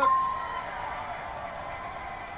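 A single bell chime marks the correct price, fading within about half a second, over a studio audience cheering and clapping steadily.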